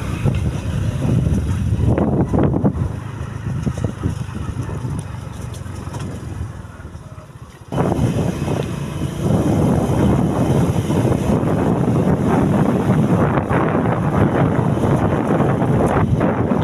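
Wind buffeting the microphone while riding a motorcycle, with a rushing noise strongest in the lows. It dies down about six seconds in and cuts back in loud just before eight seconds.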